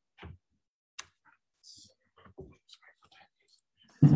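Handling noise close to the microphone: scattered light clicks, taps and short rustles as the phone or laptop that is streaming is handled, ending in a loud bump right at the end.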